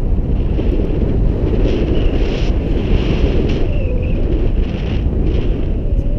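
Wind buffeting the microphone of a camera on a tandem paraglider in flight: a loud, steady rumble of wind noise.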